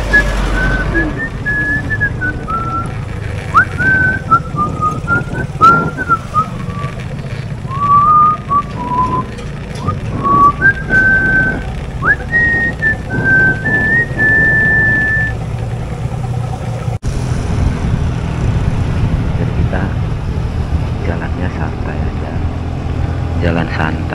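A person whistling a tune in short, wandering notes over the steady low rumble of a motorcycle ride. The whistling stops about fifteen seconds in, and only the riding noise is left.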